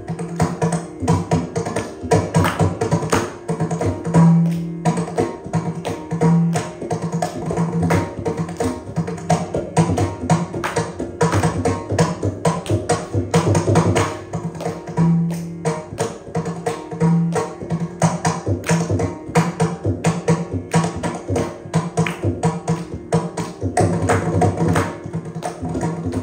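Mridangam playing a solo in adi tala: dense, fast strokes on both heads, with a few held deep booming bass strokes over a steady drone.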